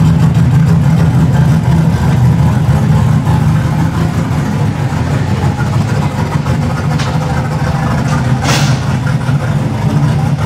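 A vehicle engine idling steadily with a loud, low rumble.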